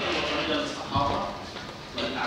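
Speech in a large hall, with a single thump about a second in.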